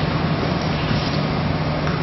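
Steady low mechanical hum over an even background noise, unchanging throughout.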